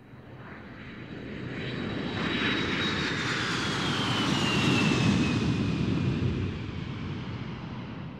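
Jet airplane passing by: a rush of engine noise that swells and then fades, with a high whine that falls steadily in pitch as it goes past.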